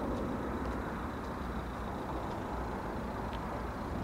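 Steady low rumble of outdoor background noise, with a faint high steady tone and a few faint ticks.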